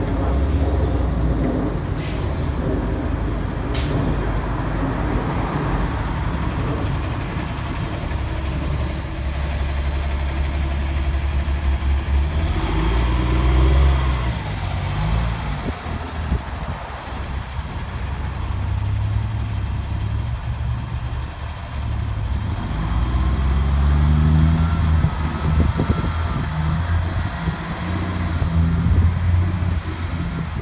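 MBTA city bus and a box truck driving past and away on a city street, their engines running loud and low over the general traffic, with the engine pitch rising and falling twice as they accelerate.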